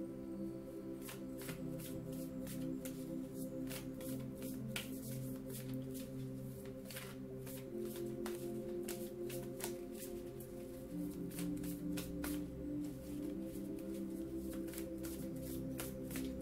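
A tarot deck being shuffled by hand: a long run of quick, irregular clicks and slides of cards against each other, over soft background music with sustained tones.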